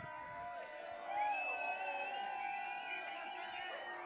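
Quiet music from the club sound system, with several wavering, gliding high tones layered over one another and no clear beat.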